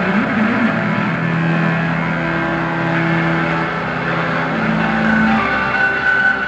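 Live band playing loud, distorted electric guitar in a dense wash, with long held notes that shift near the end, recorded from the audience on a small camcorder.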